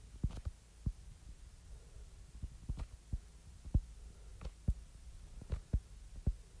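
Stylus tip tapping and clicking on a tablet's glass screen during handwriting: irregular light taps, a few a second, over a faint low hum.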